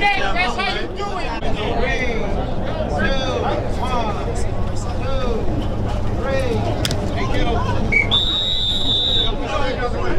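Several people talking and calling out at once across an open field. Near the end a referee's whistle blows once, one steady high note held for about a second.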